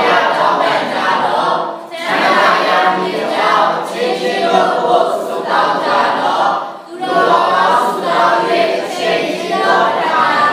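Congregation voices together in unison, in phrases with brief pauses about two and seven seconds in.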